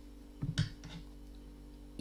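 Quiet handling of a Tunisian crochet hook and yarn, with one short soft click about half a second in, over a faint steady tone.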